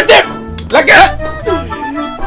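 Short yelping cries over background music with a steady low bass line, loudest at the very start and again about a second in.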